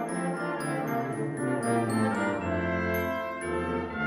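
A brass and percussion octet (trumpet, two trombones and tuba with percussion) playing a lively passage, with high bell-like tones ringing above the brass. A low bass line comes in about halfway through.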